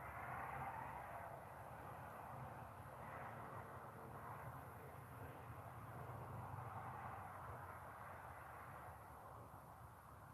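Faint steady outdoor background noise with a low hum, a little louder in the first second.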